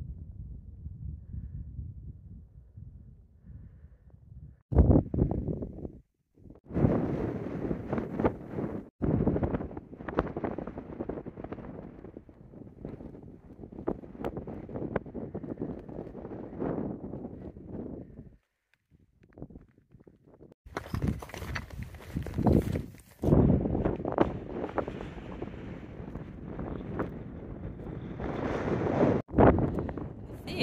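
Wind buffeting the microphone, a rough, uneven rush that surges and fades, stopping and starting abruptly several times.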